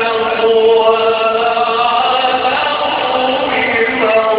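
Male Quran reciter chanting through a microphone in the melodic, drawn-out style of tajwid recitation. He holds long sustained notes that step up and down in pitch.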